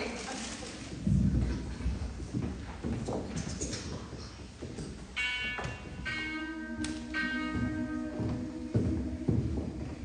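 A cappella singers taking their starting pitches: three short reedy pitched notes about five seconds in, then voices humming two steady held notes for a few seconds. Footsteps and shuffling on the wooden stage before and around them.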